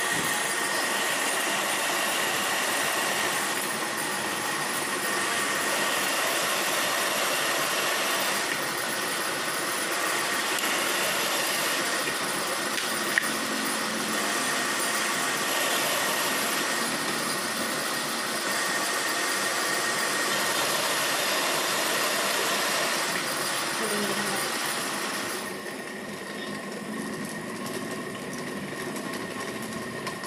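Metal lathe running while a cutting tool turns a steel shaft: a steady machine noise with a constant high whine. There is one sharp click about halfway through, and the sound drops in level and loses its hiss about 25 seconds in.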